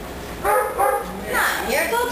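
A dog barking a few short times, in among excited human voices.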